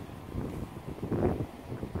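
Wind buffeting the microphone: an uneven low rumble that swells and falls, strongest about a second in.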